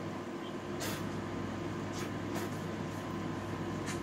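Steady low room hum, with a few faint short breathy noises about a second in, around two seconds in, and just before the end.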